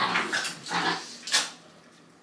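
Two small curly-coated dogs play-fighting, making short growls and yelps in about four quick bursts over the first second and a half before going quieter.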